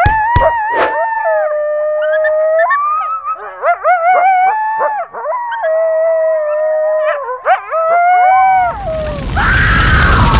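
Cartoon werewolf howling: long pitched howls, each held on one note and then sliding up or down to another, with a few sharp knocks in the first second. About a second and a half before the end a loud rushing whoosh of flames swells in.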